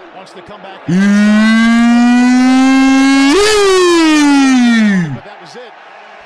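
A man's loud, drawn-out yell lasting about four seconds. It starts suddenly a second in, holds one slowly rising pitch, jumps higher, then slides down and dies away.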